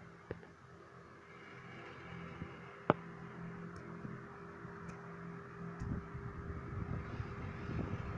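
Steady low mechanical hum with a sharp click about three seconds in, and a rumble that grows over the last two seconds.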